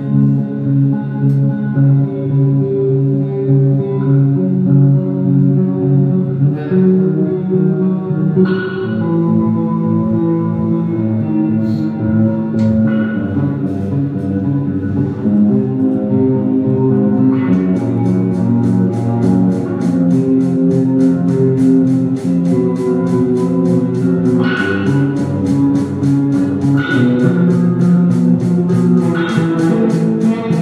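Black metal demo recording: guitar and bass play slow, held chords that change every second or so. A fast, even ticking joins a little past halfway.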